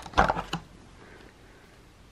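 A brief rustle and scrape of cardboard packaging, as a small lip balm tube is pulled out of an advent calendar compartment.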